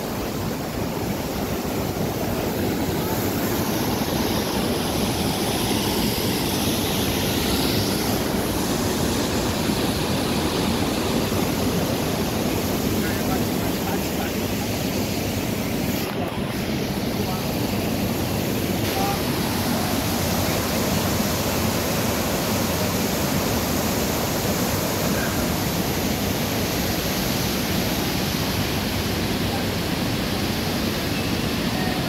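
Steady rush of a shallow stream's water flowing over low stone weirs, with voices of people nearby.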